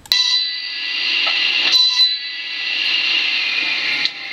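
A steady, loud, high-pitched whine made of several ringing tones. It starts suddenly with a click.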